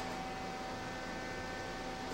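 Steady hiss with a thin, constant electrical hum: the room tone of a camcorder recording, with no drumming or other events.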